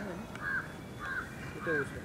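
A bird calling: three short notes, each rising and then falling, about two-thirds of a second apart.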